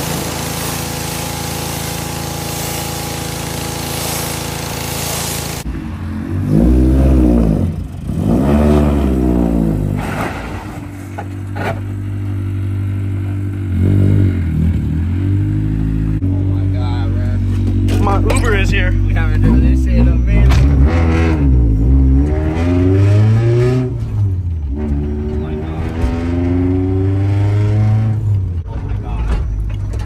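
A steady hiss with a low hum cuts off abruptly about five seconds in. After that, a Honda Civic EK's freshly rebuilt D16Y four-cylinder engine revs up and down again and again, its pitch rising and falling, with steadier stretches between the revs.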